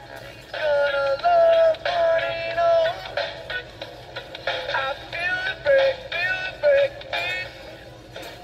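Music with singing from a radio broadcast, played through the Coby CR-A67 clock radio's small speaker and thin, with little bass. Long held sung notes in the first few seconds, then shorter sung phrases.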